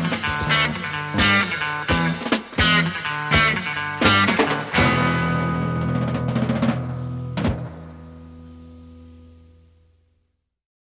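A late-1960s psychedelic rock trio of electric guitar, bass and drum kit plays the closing bars of a song, with drum hits under the guitar and bass. After a last hit at about three-quarters of the way in, a final chord rings out and fades away to silence.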